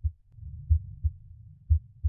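Normal heart sounds at the cardiac apex from a stethoscope recording: a low lub-dub pair about once a second. Between the beats a soft, low vesicular breath sound rises and fades in the middle.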